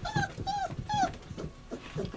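Five-week-old sheepadoodle puppies whimpering: three short calls, each rising then falling in pitch, in the first second or so, with soft scuffling beneath.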